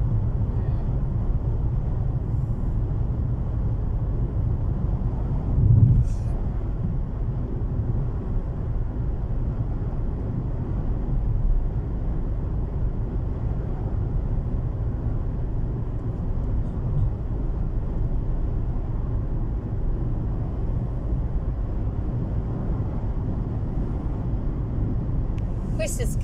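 Steady low rumble of a car's engine and tyres heard from inside the cabin while driving along a road, with a brief thump about six seconds in.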